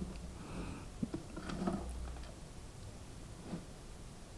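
Faint handling noise from multimeter test leads and a handheld clamp meter: a few light clicks and rustles, about a second in, around a second and a half, and again near the end, as the probes are set against the panel meter's terminals.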